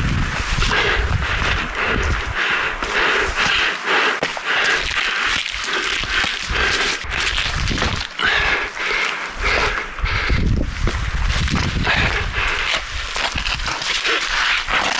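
Wind on a body-worn action camera's microphone, with scuffs of hands and shoes on rock and breathing as a climber scrambles down a rocky ridge. The wind rumble is strongest in the first few seconds and again over the last four.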